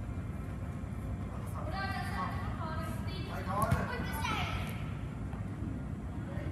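Children's voices calling out during futsal practice over a steady low background rumble. There are several short high-pitched calls around the middle, one of them falling in pitch. A single thump comes a little past halfway.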